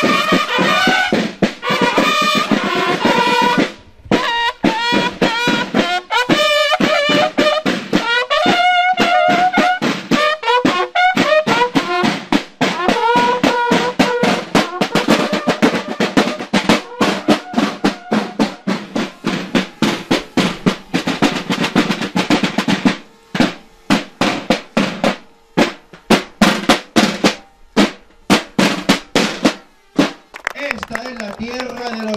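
Marching band of bugles and snare drums playing: rapid snare rolls and beats under held brass calls. Near the end the brass stops and the drums go on alone in separate strokes.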